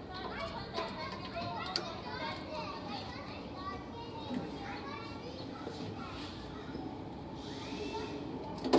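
Children's high-pitched voices at play, chattering and calling over one another.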